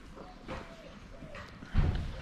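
Footsteps on a paved street, with a dull low thump near the end, over a run of short repeated animal calls.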